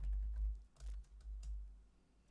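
Typing on a computer keyboard: a handful of separate keystrokes as a short word is entered, over a steady low hum.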